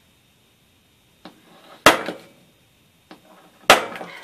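A hand hole punch driven through a notebook cover into the desk: two sharp knocks, about two seconds apart, one for each hole, each preceded by a faint click and jarring the desk.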